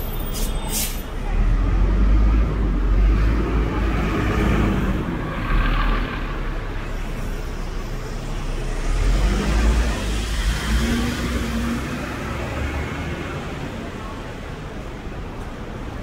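City street traffic: a large coach bus pulls past close by, its engine rumble loudest over the first few seconds, and another heavy vehicle passes with a second swell of rumble about ten seconds in.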